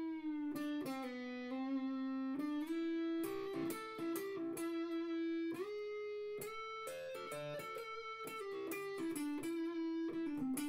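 Epiphone 1956 Les Paul Pro electric guitar played on its neck P90 pickup with the tone knob turned down for a deep, bassy sound: a single-note melodic line, held notes with vibrato at first, then quicker runs and a slide up from about three seconds in.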